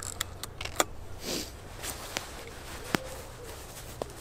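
Small metallic clicks and rattles from a Mamiya RB67 medium-format film camera being handled, with a brief rustle a little over a second in and one sharper click about three seconds in.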